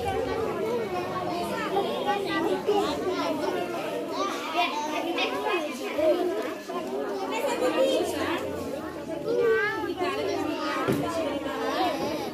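Crowd of schoolchildren chattering, many voices overlapping at once in a steady hubbub.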